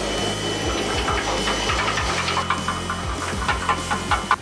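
Pressure washer running: a steady pump hum under the spray of its jet on a steel vehicle chassis, with many irregular clicks and spatters from about a second in.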